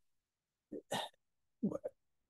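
A man's voice making two brief, clipped hesitation sounds about a second apart, between stretches of dead silence, as he pauses mid-sentence.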